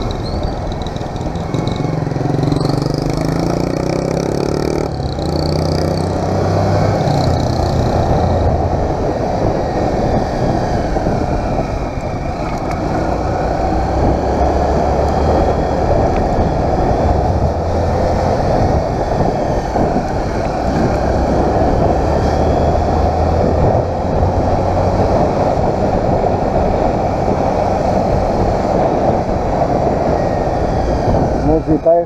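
Motorcycle engine running under way, its note stepping up and down as it accelerates and shifts through the gears, with a steady rush of wind and road noise over it.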